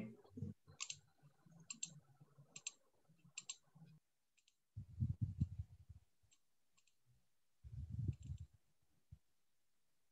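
Faint clicks of a computer mouse and keyboard while editing text, a handful of sharp clicks spaced about a second apart. Two short low muffled bumps follow in the second half.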